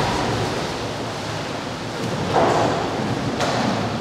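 Water rushing and splashing in a fish-hatchery sorting tank as salmon are handled. The rush is steady, with a louder stretch of splashing a little over two seconds in that lasts about a second.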